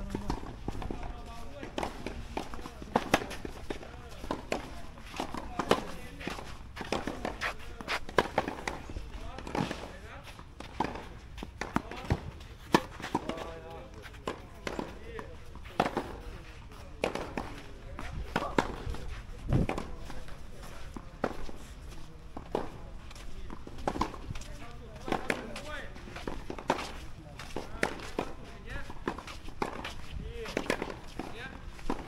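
Footsteps on a paved walkway mixed with the sharp pops of tennis balls being struck on nearby clay courts, irregular and scattered throughout, with voices in the background.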